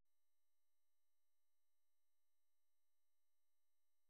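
Near silence, with only a very faint steady electronic tone.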